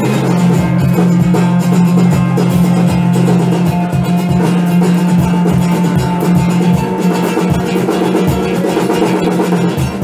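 Live acoustic guitar and drum kit playing together: the guitar's plucked and strummed notes ring over a held low note, with snare and cymbal hits throughout.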